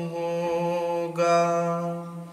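Male voice reciting a naat, holding a long sung note at one steady pitch. It moves to a new syllable about a second in and fades near the end.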